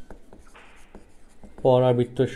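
Marker pen writing on a whiteboard in short, faint scratching strokes. A man's voice starts near the end.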